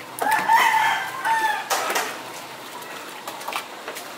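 A rooster crowing once, one call of about a second and a half that starts just after the beginning and falls slightly in pitch at the end. A short rough noise follows right after the crow.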